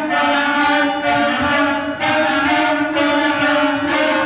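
Student concert band playing: wind instruments hold sustained chords that change about once a second over a steady low note.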